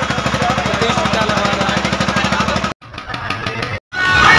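An engine running with a rapid, even low pulse, with voices over it. Near the end it breaks off into a short, quieter stretch.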